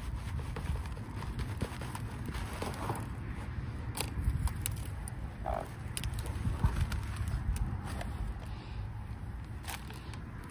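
Dry potting soil scraping and sliding out of a tipped plastic plant pot into a larger plastic planter, with scattered crackles and small knocks of plastic on plastic over a low rumble.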